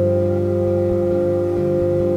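Ambient post-rock instrumental music: a droning electric guitar chord held steady, several low and middle notes sustained together.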